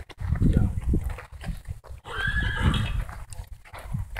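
A horse whinnies briefly about two seconds in, with low rumbling thuds before it.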